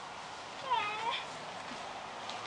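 A single short cat meow about two-thirds of a second in, its pitch dipping and then rising again.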